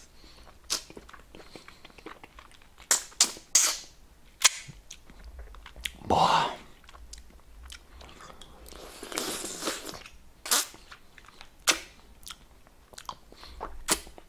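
Someone eating hard candy close to the microphone: scattered crunches and mouth clicks, a dozen or so spread over the stretch.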